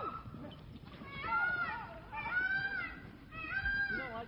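A young goat bleating three times, each call long and high-pitched, about a second apart.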